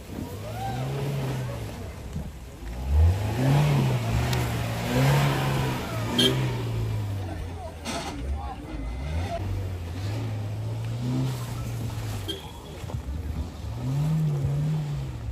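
Suzuki Jimny's engine revving in repeated surges, rising and falling as it is driven through deep mud.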